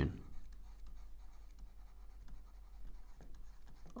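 Faint scratching and light tapping of a stylus handwriting a word on a tablet, in short irregular strokes.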